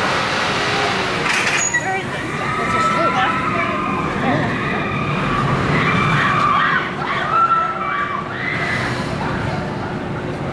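Voices of people standing around, with a rushing noise for the first second or two and wavering, drawn-out tones through the middle.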